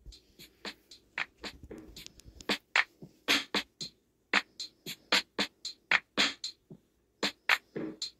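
Programmed drum pattern from a phone beat-making app playing back with its tempo turned very slow: separate sharp drum hits, about three or four a second, unevenly spaced, with short gaps about halfway through and near the end.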